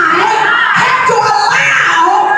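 A woman's amplified voice shouting into a microphone over music, with a church congregation shouting along.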